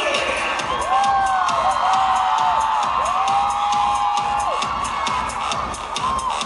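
Live pop music over a concert PA heard from within the crowd: a singer holds two long notes over a steady beat, with the crowd cheering underneath.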